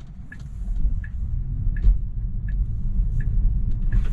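Low road and tyre rumble inside a moving Tesla's cabin, with a light tick repeating evenly about every 0.7 seconds from the turn-signal indicator.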